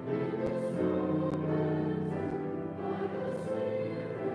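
Congregation singing a hymn together, many voices holding sustained notes.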